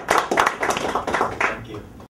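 A small audience clapping in a quick, irregular patter, thinning out and fading near the end.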